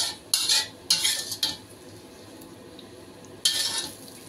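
A cooking utensil scraping against a pan as the finished mapo tofu is scraped out onto a plate. Three quick scrapes come in the first second and a half, then one more near the end.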